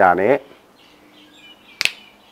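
A man's voice ends in the first half-second, followed by faint bird chirps. Near the end there is a single sharp click.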